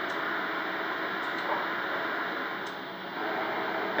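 Steady background hiss of a café room with a faint high steady tone, easing slightly about three seconds in; the pour of milk into the cup makes no distinct sound of its own.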